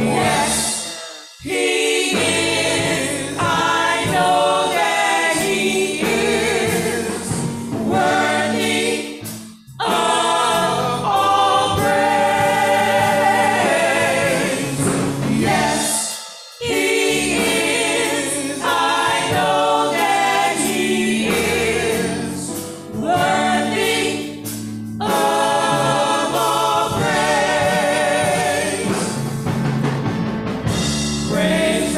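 A vocal quartet singing a gospel song in four-part harmony through handheld microphones, with short breaks between phrases about every eight seconds.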